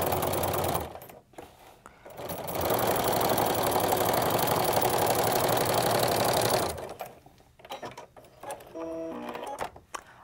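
Home sewing machine with a walking foot stitching a straight quilting line through a layered t-shirt quilt. It runs briefly, stops about a second in, then runs steadily again for about four seconds before stopping near 7 s.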